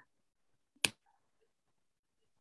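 Near silence with one short, sharp click a little under a second in.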